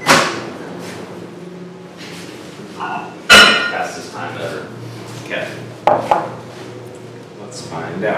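Microwave oven being worked and opened: a sharp click at the start, then a louder clack a little over three seconds in, and another click near six seconds, with a few brief words between.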